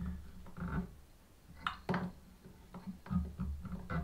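Faint, scattered small clicks and taps from hands handling copper wire and tying thread at a fly-tying vise, over a low steady hum.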